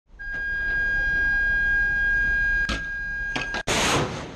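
A steady high-pitched warning tone sounds over a low rumble, then near the end a Rolling Airframe Missile launches from its deck-mounted box launcher with a sudden loud rocket blast.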